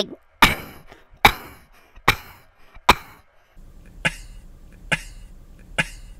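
A man's short, breathy laugh: single huffs repeated at an even pace, just under one a second, seven in all with a short pause near the middle. A low hum runs under the later huffs.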